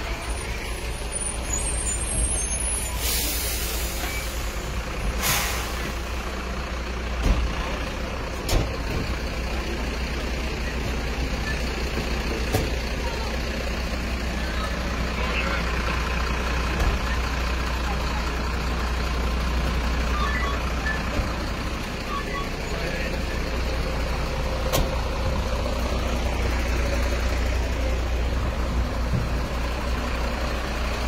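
A heavy diesel emergency vehicle's engine running steadily at idle, with two short hisses in the first few seconds and a few sharp knocks later on.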